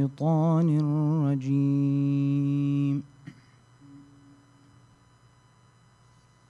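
A man chanting solo and unaccompanied into a microphone, in a winding, ornamented line. About three seconds in he ends on one long held note that cuts off sharply, leaving quiet room tone.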